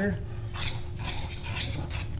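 A metal spoon scraping and stirring a firm, set oatmeal-and-chicken puree in a stainless steel saucepan, in several irregular strokes.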